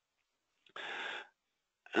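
A single short breath near a headset microphone, about half a second long, coming just under a second in; the rest is gated silence.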